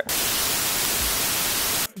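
A burst of loud, even white-noise static, like an untuned TV, lasting nearly two seconds and cutting off suddenly: an edited-in transition sound effect between scenes.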